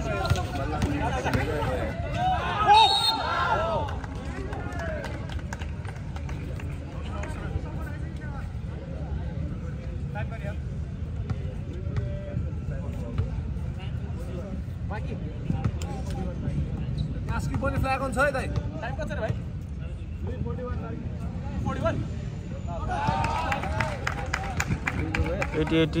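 Voices of players and spectators talking and calling out at a basketball game, loudest near the start and again near the end, over a steady low rumble with occasional sharp knocks.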